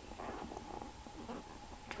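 Faint rubbing and rustling of a leather handbag being handled right up against the microphone.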